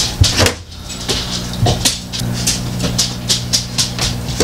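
Light clicks and rustles of hands handling things, several a second at irregular spacing, over a steady low electrical hum.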